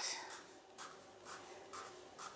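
Felt-tip marker drawing short dashes on paper: a few soft, brief scratching strokes, about two a second.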